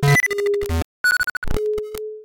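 Software-generated synthesizer music: disjointed synth notes and percussive hits that start and stop abruptly at irregular moments, with no steady beat. A single steady mid-pitched tone is held over the last half second.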